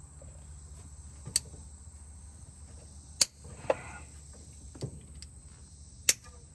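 A few sharp clicks and clacks, the loudest about three seconds in, as a distributor cap and its plug wires are handled and seated on an old truck engine. A steady high chirring of crickets runs underneath.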